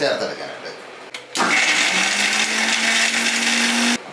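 Electric mixer grinder (blender) with a steel jar, switched on about a second and a half in. Its motor hum climbs slightly as it comes up to speed, then runs steadily before cutting off abruptly at the end.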